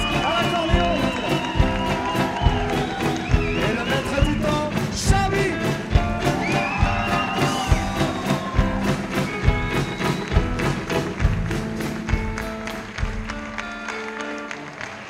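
Live band music: a drum kit keeps a steady beat under guitar and other instruments, with a high lead line sliding between notes. Near the end the drums drop out and the music gets quieter.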